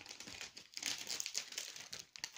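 A plastic snack bag of lentil chips crinkling as it is handled: a continuous run of irregular crackles and rustles.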